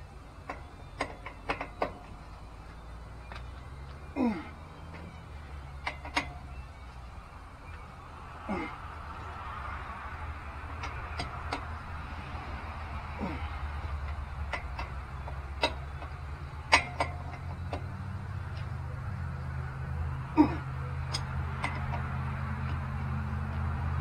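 Scattered clicks and knocks of hand tools and metal hardware as a mud flap is fastened by hand inside a pickup's front wheel well, with a few short falling squeaks every few seconds. A vehicle's low hum grows louder near the end.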